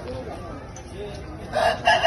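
Aseel game rooster crowing loudly, starting about a second and a half in, with a brief break partway through the call.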